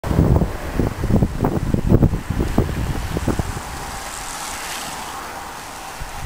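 Wind buffeting the microphone in gusty low rumbles for the first three and a half seconds, then easing to a steady outdoor hiss.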